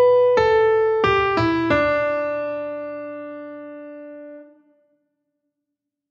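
Piano playing the closing measures 15 and 16 of a melodic dictation exercise. Four single notes step downward in quick succession, and the last is held for about three seconds, fading, before it stops.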